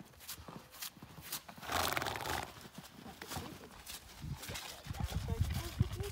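A horse's hooves clopping on the barn floor and then thudding onto snow as it is led out on a rope. A loud breathy rush comes about two seconds in.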